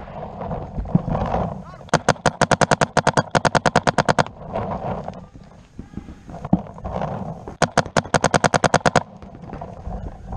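Paintball marker firing in rapid strings, about nine or ten shots a second, heard close up from the barrel. One long string starts about two seconds in and a shorter one comes near the end, with a few single pops and muffled shouting in between.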